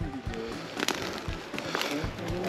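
Quiet background music, with two short sharp clicks, about a second in and near the end, from a baitcasting rod and reel being handled as a spinnerbait is cast.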